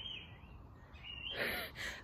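Birds chirping faintly in the background, with short high whistled notes at the start and again about a second in. A short breathy rush of air comes near the end.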